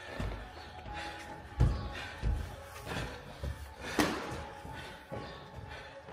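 Boxing sparring: dull thuds of gloved punches and feet on the ring canvas, with the loudest about one and a half seconds in and a sharper hit at about four seconds, over steady background music.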